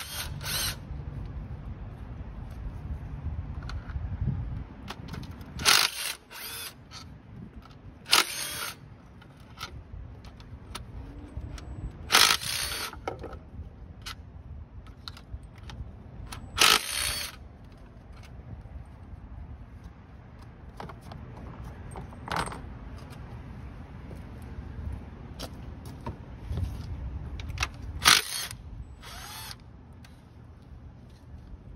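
Cordless impact driver run in about eight short bursts, each under a second, backing out the 10 mm bolts along the top of an intake plenum.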